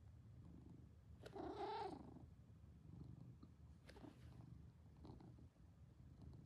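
A domestic cat purring softly and steadily at close range. A brief, slightly louder sound comes about a second and a half in.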